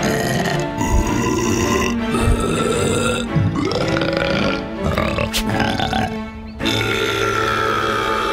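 A cartoon character's comic burp-like grunts and vocal noises over background music.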